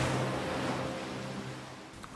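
Ocean waves breaking and washing over rocks: a steady rush of surf that fades away.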